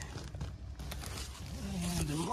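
Faint rustling and scraping from movement close to the microphone, with a few light clicks in the first second. A man's voice starts near the end.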